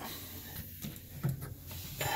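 Faint, steady hiss of water spraying inside a homemade vapor (wet) blast cabinet.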